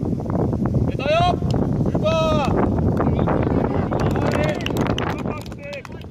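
Footballers shouting to each other on the pitch: two long calls about one and two seconds in, then shorter calls later, over wind rumble on the microphone.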